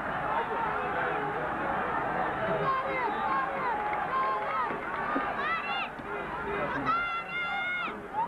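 A stadium PA announcer's voice carrying through the loudspeakers over the steady murmur of a large football crowd, with drawn-out held syllables near the end.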